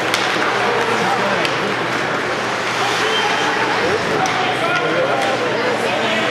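Ice hockey arena crowd: a steady babble of many spectators talking at once, with a few sharp clacks of sticks and puck on the ice.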